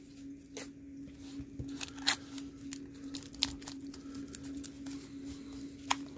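Adhesive tape being handled and pressed down over folded cardboard: scattered crackling with a few sharp clicks. A steady low hum runs behind it.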